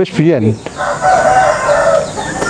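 A rooster crowing: one long crow starting just under a second in, after a brief spoken word.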